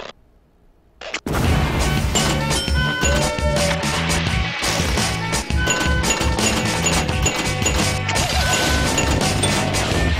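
About a second of near silence, then a short snap, then loud intro music with a rhythmic bass line, crowded with crashes, hits and short electronic bleeps.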